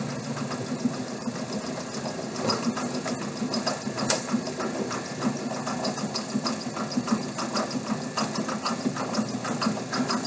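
Cumulative compound DC motor running steadily with no load on 120 volts at about 1,750 rpm: a steady hum with a fine, rapid ticking over it.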